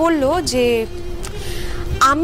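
A woman speaking for about the first second, over a held note of background music that carries on to the end.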